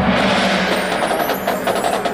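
Marching band music in a transition. A held band chord dies away into a noisy rushing swell, and from about a second in a fast, evenly spaced run of percussion strikes builds through it.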